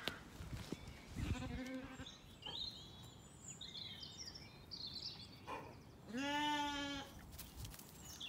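Zwartbles sheep bleating: a short, faint bleat about a second in, then a louder, wavering bleat lasting about a second near the end.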